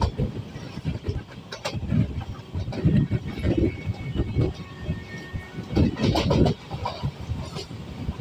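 Express passenger train running along the track, heard from inside a coach at the window, an uneven rumble that swells and fades every second or so.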